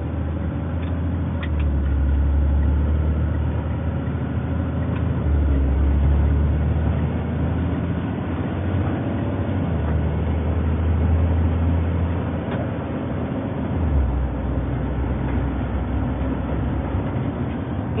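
Engine and road drone heard from inside a tow truck's cab while it drives, a low steady hum whose pitch steps up and down a few times as the engine speed changes.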